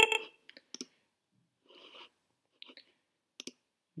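A short computer alert tone at the very start, sounding as a SCADA alarm dialog ('Filling is below 10') pops up, followed by a few faint, scattered mouse clicks.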